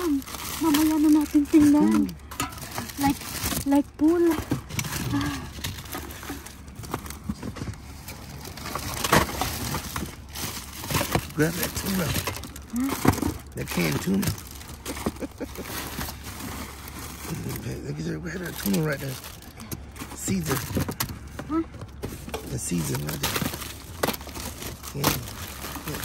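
Plastic bags, candy wrappers and cardboard boxes crinkling, rustling and knocking as gloved hands sort through packaged Easter candy, with voices talking on and off over it.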